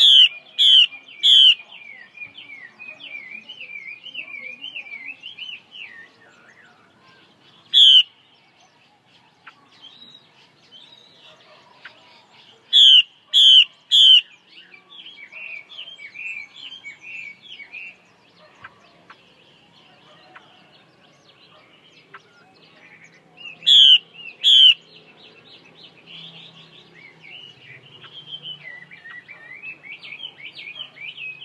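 Female Chinese hwamei (họa mi) calling in a bamboo cage: a running soft chattering twitter broken by very loud, sharp, clipped calls in bursts of three, then one, three and two. These are the female's 'te' calls that keepers play to fire up a male hwamei.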